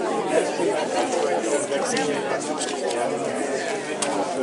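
Many people talking at once: the steady chatter of a crowd of guests in a room, with no single voice standing out.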